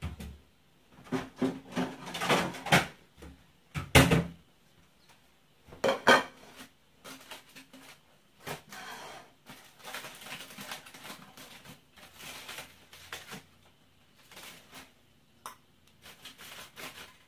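Dishes clattering: a plate and utensils knocked and set down on a kitchen counter, loudest in the first six seconds. Then a softer, scattered crinkling as an aluminium-foil packet is handled and opened.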